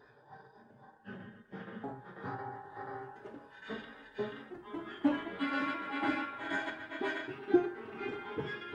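Grand piano improvisation, played partly by hand on the strings inside the case. Sparse notes begin about a second in and build to a dense, louder flow, with a sharp accent near the end.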